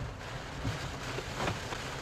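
Steady rain and wind noise heard from inside a vehicle, with a few faint taps.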